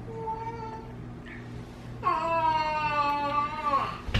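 A baby's long, drawn-out whining cry, held on one pitch for nearly two seconds from about halfway in and dropping at the end, after a fainter brief whimper at the start.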